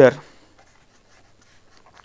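Pen writing on paper: faint, short strokes as a handwritten line is begun.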